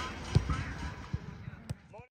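Footballs being kicked and passed on a grass pitch: a few dull thuds, with a sharper knock near the end.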